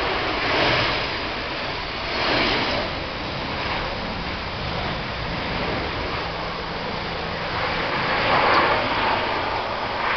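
Airbus A320's jet engines heard from outside as the airliner rolls out on the runway after landing: a steady noisy roar that swells three times, about a second in, about two and a half seconds in, and near the end.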